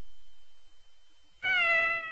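A cat's meow: one call a little under a second long, starting about one and a half seconds in and falling slightly in pitch.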